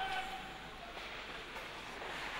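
Faint, steady ice hockey rink ambience during live play: an even hiss from skates on the ice and the arena.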